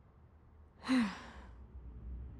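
A woman sighing once, about a second in: a short breath out with her voice dropping in pitch.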